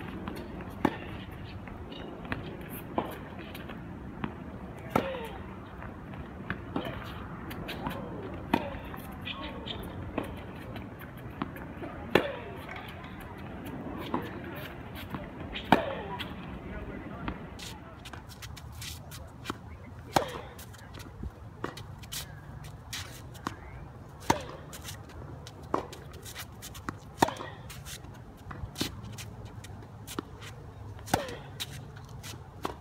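Tennis rally: the ball struck by rackets and bouncing on a hard court, sharp hits every second or two with short ringing after the loudest.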